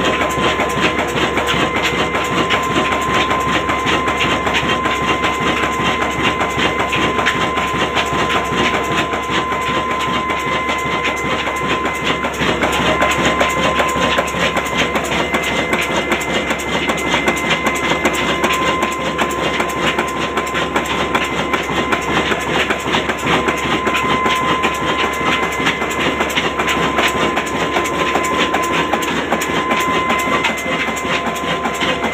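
Old stationary diesel engine running steadily: a dense, even mechanical clatter, with a steady whistle-like tone throughout.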